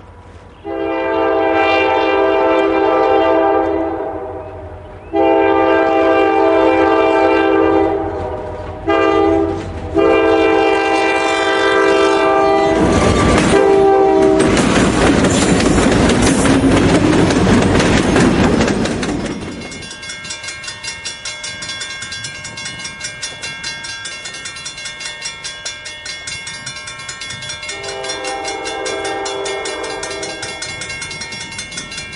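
Diesel freight locomotive horn blowing the grade-crossing signal: two long blasts, a short one and a long one. Then the locomotive engine passes close by, loud and rumbling. After that a crossing signal bell rings rapidly and steadily, and the horn sounds again near the end.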